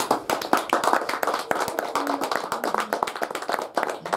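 Audience clapping in applause at the end of a recited poem, many separate claps that die away near the end.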